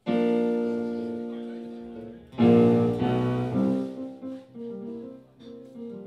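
Keyboard played with a piano sound, opening a song: a loud chord struck right at the start and left to ring and fade, a second, louder chord about two and a half seconds in, then a run of single notes.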